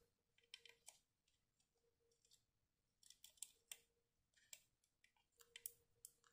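Faint, scattered small plastic clicks and taps of a micro SD card being pushed and worked into the tight card slot of a small indoor security camera, over near silence.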